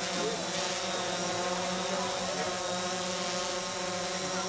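A steady, unchanging drone made of several even tones, with a hiss over it.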